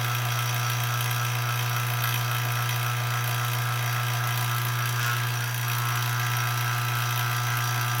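CPS Pro-Set 1.9 CFM dual-stage vacuum pump running steadily with a constant low hum, holding a deep vacuum of about 29.9 inches of mercury, down in the tens of microns: a good working pump at the bottom of its pull-down.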